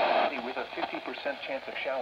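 Capello NOAA weather radio's speaker giving static hiss that cuts out a moment in, then a weather broadcast voice coming through faintly: the station is now being received through the newly connected external antenna.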